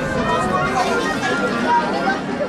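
Indistinct chatter of many voices from a crowd of spectators, steady throughout.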